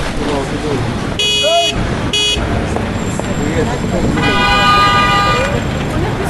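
Busy city street: steady traffic noise and a babble of voices, with car horns sounding. There are two short toots about a second in, then a longer horn blast around four seconds in.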